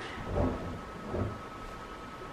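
Room tone during a pause in a man's talk: a low rumble and a faint steady high hum, with a soft hesitant "uh" about half a second in and another soft low swell a little over a second in.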